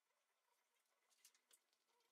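Near silence, with faint ticks of a precision screwdriver handled against a smartphone's open frame, the two clearest a little after a second in, close together.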